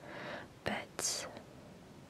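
A woman's soft breath and mouth sounds close to the microphone: an airy inhale, a small click, then a short high hiss about a second in.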